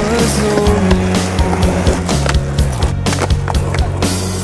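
Skateboard wheels rolling on asphalt, with a few sharp knocks, mixed with a rock song playing over it.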